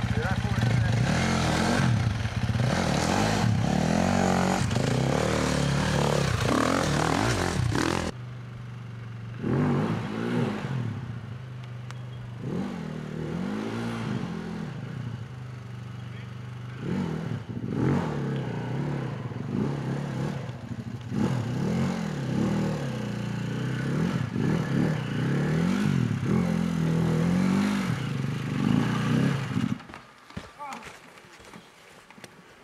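Off-road dirt bike engines working up a steep rocky climb: loud, hard running for the first few seconds, then, after an abrupt drop in level, the engine revs up and falls back again and again in short bursts as the rider picks a way over the rocks.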